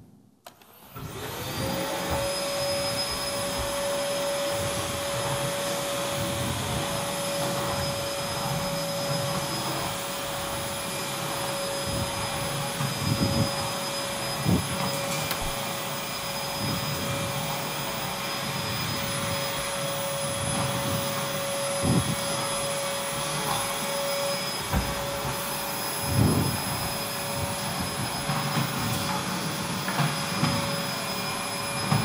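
Canister vacuum cleaner switched on about a second in, its motor spinning up into a steady whine with a rushing suction noise, joined by a few soft thumps.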